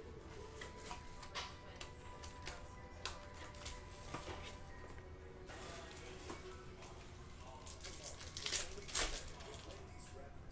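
Crinkling and crackling of plastic wrap and a foil trading-card pack being handled and opened, with a louder crackle twice near the end. Faint background music plays under it.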